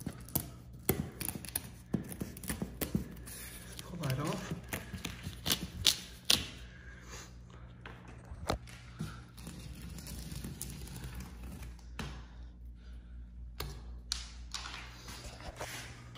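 Scattered light taps and rustling from a cut waste strip of natural-veneer wallcovering being peeled off the wall by hand, over a steady low hum.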